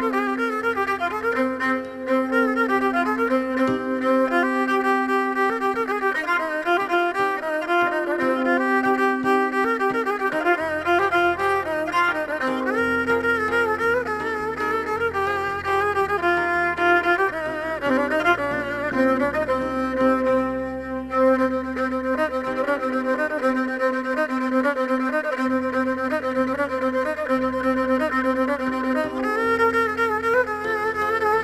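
Kabak kemane (Turkish gourd spike fiddle) bowed in an instrumental folk melody over a steady drone note, with low accompaniment notes underneath.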